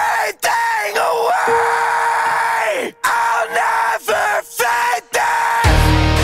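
Song breakdown: short yelled vocal phrases with heavy effects, chopped apart by abrupt silences, with one longer held note in the middle. Near the end a loud heavy-rock band with drums and bass kicks in.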